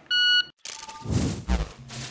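Competition Electronics Pocket Pro II shot timer giving its single start beep, a steady electronic tone lasting under half a second: the start signal after "stand by". About a second in, a rushing burst with a low thump follows and fades away.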